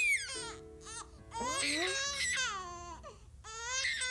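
A cartoon baby crying in several wailing cries, the longest about halfway through and another starting near the end, over soft held background music notes.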